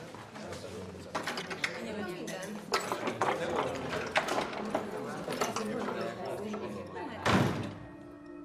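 Indistinct background voices with scattered knocks and clatter, and a louder thud near the end.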